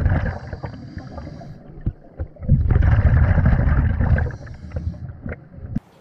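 Muffled water noise recorded underwater, coming in two long surges of a couple of seconds each, with a few small clicks between them.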